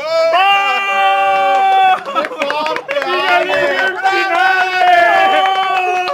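A man's voice lets out two long, drawn-out cries held on one pitch, the second stepping down in pitch near the end, as the last damage of the card game is counted out. Brief clicks come between the two cries.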